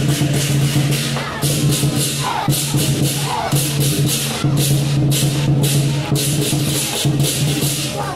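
Lion dance percussion band playing: rapid, steady cymbal clashes several times a second over a low, sustained ringing tone from the drum and gong.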